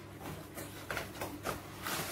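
Cardboard ring-light box being opened by hand, its lid sliding and scraping off, with a few short knocks and rustles about a second in.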